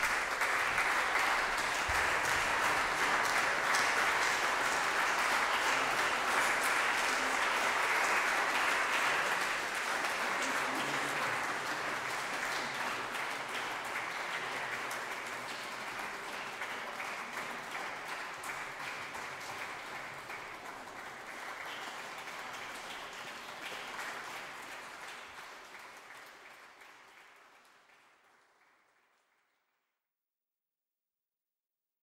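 Audience applauding, at its fullest over the first ten seconds, then thinning and fading out near the end.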